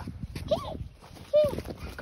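A dog barking twice: two short, high barks about a second apart.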